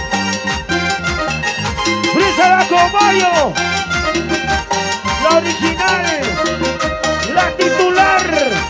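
Latin American band music from a Peruvian group: a quick, steady beat under a lead melody line that bends in pitch and falls away at the ends of its phrases.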